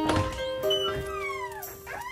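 Melodic electronic instrumental music: held synthesizer chord tones, then a synth sweep gliding down in pitch over about a second and turning to rise again near the end.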